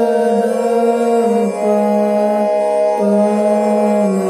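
Harmonium sound from a smartphone app, holding sustained reedy notes and stepping to a new note about every second, as for practising a sargam exercise.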